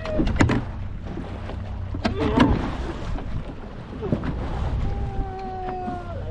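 A fishing boat trolling on rough water, with a steady low rumble from the motor and waves. Sharp knocks and clatter of gear are handled on deck in the first half. Near the end a steady pitched tone is held for about a second.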